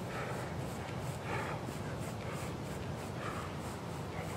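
A person breathing hard from exertion, a soft noisy breath about once a second, over a steady low rumble.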